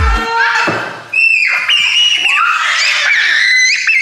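A small child squealing: long, high-pitched cries that rise and fall, starting about a second in and going on to the end.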